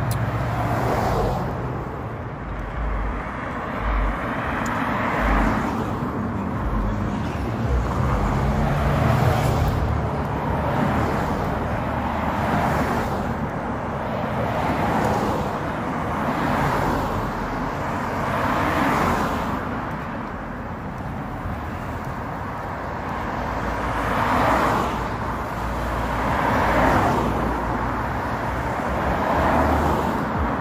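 Road traffic: cars passing one after another, their noise swelling and fading every few seconds.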